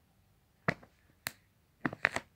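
Three sharp plastic clicks, about half a second apart, as fingers pinch and work the clear plastic valve stem of an inflatable vinyl mattress. No rush of escaping air is heard.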